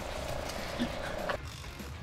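A dog whining: one steady, level whine for just over a second that stops abruptly, leaving low background noise.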